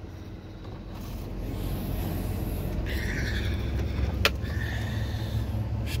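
Low steady rumble of a semi truck's diesel engine idling, heard inside the sleeper cab and growing slightly louder. About four seconds in, a sharp click as the cab refrigerator's door latch opens, with light rustling around it.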